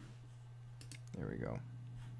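A few quick clicks at the computer, keys or mouse button, about a second in, over a steady low electrical hum.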